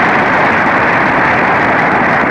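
Loud, steady motorboat engine noise, the sound of a speedboat towing a barefoot water-skier.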